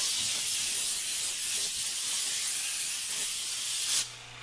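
Steady high-pitched hiss of the vacuum former's cooling air blowing onto the freshly formed hot plastic sheet, cooling it after forming. It cuts off abruptly near the end.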